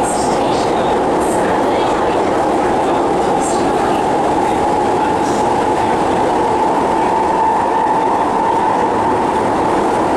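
Steady running noise of an MRT train heard inside the car: an even rumble and rush from wheels on rail, with a faint steady whine over it that grows a little louder midway.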